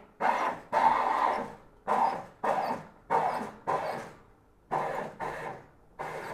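Nuova Simonelli Appia Life espresso machine steam wand purging steam into a stainless milk pitcher in a series of short hissing bursts, roughly one every three-quarters of a second. The purge flushes out milk residue that would otherwise clog the wand.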